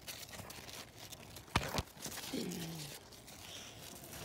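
Cucumber leaves and vines rustling and crinkling as hands push through them, with two sharp snaps about a second and a half in.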